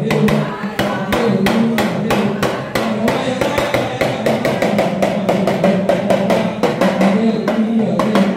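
Drum-led dance music: fast, steady hand-drum strokes over a low melodic line that steps up and down in pitch.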